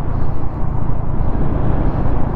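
Suzuki Raider 150 Fi motorcycle riding at steady speed: engine running under a heavy, continuous rush of wind on the camera microphone, strongest as a low rumble.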